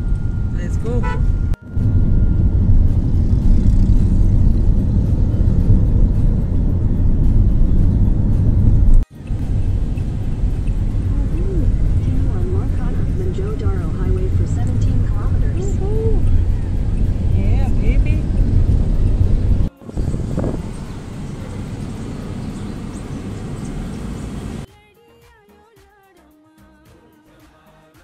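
A car driving along a road, heard as a loud, low rumble of road and wind noise, cut off sharply and resuming three times. Near the end it cuts to quiet music.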